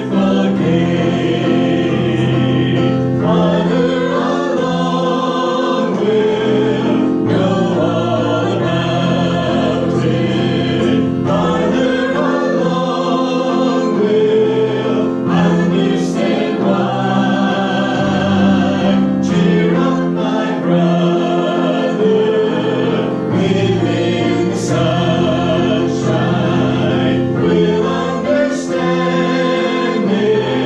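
Church congregation singing a hymn together from hymnbooks, many voices holding long notes in phrases of a few seconds, at a steady loudness.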